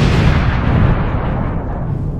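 Stock explosion sound effect: a loud blast that fades slowly, its hiss dying away before its low rumble.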